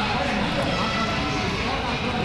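Sports-hall ambience during a roller derby jam: a steady rumble of roller skate wheels on the sport-court floor under the chatter of the crowd.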